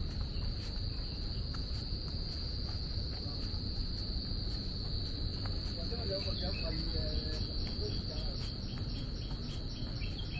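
A steady, unbroken high-pitched insect drone holds at a single pitch throughout, from a chorus of insects in the surrounding forest, with a low rumble underneath.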